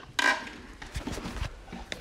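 Handling sounds of plugging in and setting a bench DC power supply: a short scrape just after the start, then a few light knocks and clicks.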